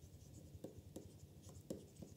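Faint scratching and a few light taps of a stylus writing a word on a tablet, over near-silent room tone.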